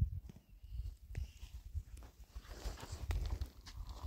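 Scattered small clicks and scrapes of dry soil and pebbles being moved by a small child's hand, over a low rumble.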